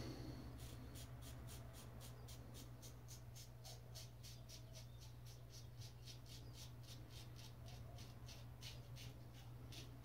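Safety razor scraping through lathered stubble in short, quick strokes, about four a second, faint, with a low steady hum under it.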